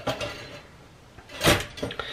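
Pop-up toaster being started: one sharp clack about one and a half seconds in as the lever is pressed down and latches, followed by a few lighter clicks.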